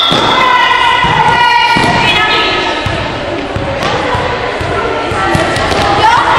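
Handball bouncing and thudding on a sports-hall floor, with children shouting. A long drawn-out shout fills the first two seconds, and the hall echoes.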